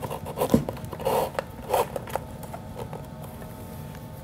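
Ribbon being pulled and rubbed through a punched hole in a paper-covered box lid, with short rustling scrapes about a second in and again just before two seconds, then quieter handling.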